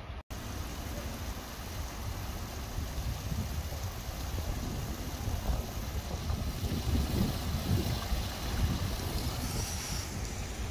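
Wind buffeting the microphone: a steady, uneven low rumble with a faint hiss above it.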